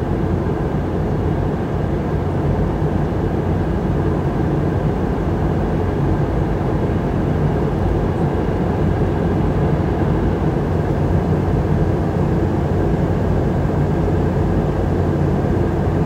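Steady cabin noise of a Boeing 717 climbing or cruising above the clouds: the rush of air past the fuselage and the drone of its tail-mounted jet engines, low and even throughout.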